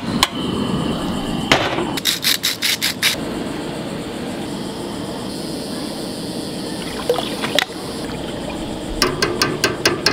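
Steady hiss around a stainless stockpot of crab boil on a burner, with a run of quick clicks about two seconds in and another near the end as the pot is stirred with a metal ladle.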